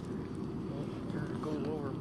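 Steady low rumble of wind on the microphone, with a voice starting to speak about a second in.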